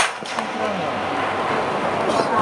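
A wooden baseball bat swishing through a full practice swing: one short, sharp whoosh at the very start, followed by steady background chatter.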